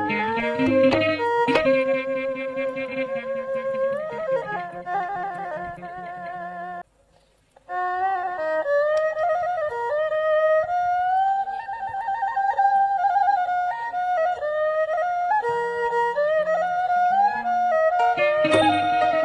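Traditional Khmer (pleng boran) ensemble music, a wavering melody with vibrato over lower accompaniment. The sound drops out briefly about seven seconds in.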